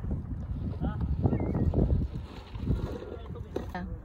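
Wind buffeting the phone's microphone in uneven gusts, with a few faint voices now and then.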